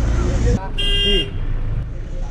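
A vehicle horn honks once, a short pitched blast about half a second long near the middle, over the low rumble of street traffic and background voices.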